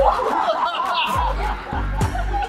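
Laughter in quick, repeated chuckles over background music with a regular bass beat.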